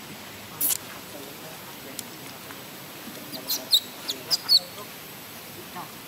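Infant macaque squealing in short, high-pitched cries, a cluster of about five in the second half, with a single brief squeal a little under a second in. These are distress cries from an infant held tightly by another monkey and kept from its mother.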